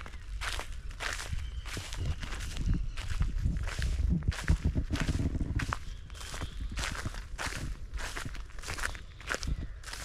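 Footsteps crunching through the dry straw and stubble of a harvested field, about two steps a second, with a low rumble underneath that is strongest around the middle.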